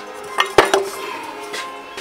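Metal tools and parts clinking against the motorcycle during disassembly, with two sharp clinks about half a second in. Music plays faintly underneath.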